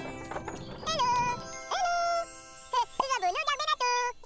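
Light cartoon background music, then a tinkling chime effect about a second in, followed by a high, cute cartoon voice babbling and humming in made-up words with a wavering, sing-song pitch.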